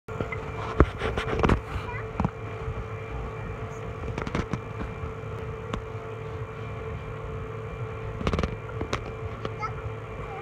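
Steady hum of the inflatable slide's electric air blower, with scattered knocks and thumps, the loudest about a second and a half in, and faint children's voices.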